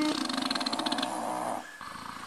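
Police radio: the tail of a short beep tone, then about a second and a half of rough, garbled transmission noise that cuts off suddenly.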